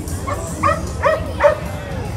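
A dog barking four times in quick succession, about 0.4 s apart, the last bark the loudest, over a steady low background rumble.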